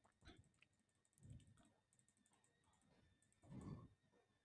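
Near silence, with a few faint computer mouse clicks as the chart on screen is changed.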